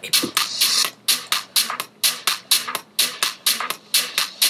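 Techno track at 126 BPM playing from Serato DJ, a steady beat with crisp hits about four times a second. A two-beat beat jump with quantize on passes through seamlessly, hard to notice by ear.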